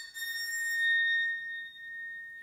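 A short bronze rod of an empty waterphone (no water in the resonance chamber) bowed with a rosined bass bow, giving one high, steady ringing tone. It swells to its loudest about a second in and then eases off while still sounding.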